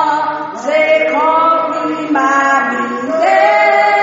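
A group of voices singing a slow hymn together, holding long notes that move to a new pitch about once a second.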